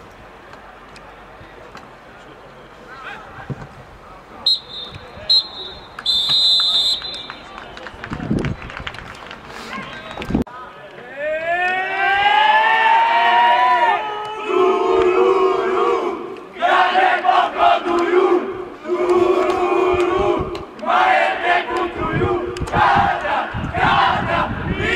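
Referee's whistle blown three times about five seconds in, the last blast longest: the final whistle. From about eleven seconds a team huddled arm in arm lets out a rising shout together, which breaks into a loud rhythmic victory chant.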